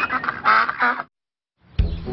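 Cartoon duck quacking a few short times, then the sound cuts off suddenly about a second in.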